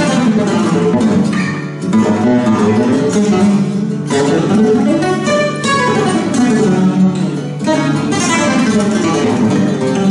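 Flamenco guitar played solo: a continuous passage of plucked notes and chords.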